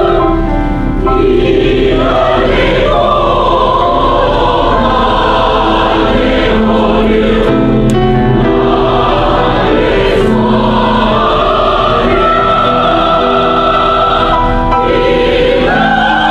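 Mixed choir of men's and women's voices singing together, loud and sustained, with held notes that change pitch from phrase to phrase.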